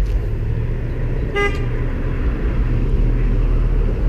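A single short car horn beep about a second and a half in, over a steady low rumble.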